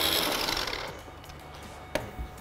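Electric food processor motor running as it purées a creamy vegetable soup, then switching off and winding down about a second in. A sharp click comes just before the end.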